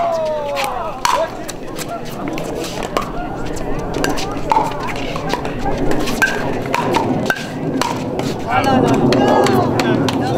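Pickleball rally: paddles striking a plastic pickleball back and forth, a series of sharp pops about a second or so apart. Background voices grow louder near the end.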